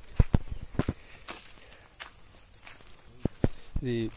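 Footsteps of a person walking on the forest floor: irregular steps, busiest in the first second, thinning out midway, then picking up again near the end.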